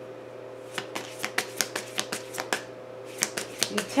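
A deck of tarot cards shuffled by hand: quick runs of sharp card clicks and slaps, with a short pause in the middle.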